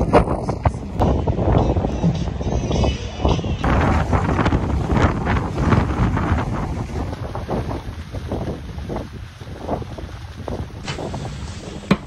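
Strong wind buffeting the microphone outdoors, a heavy gusting noise that eases somewhat over the last few seconds.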